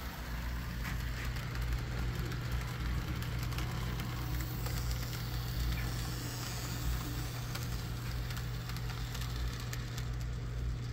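A model freight train running past on the layout track: a steady low electric hum with light clicking and rattling from the wheels and cars on the rails.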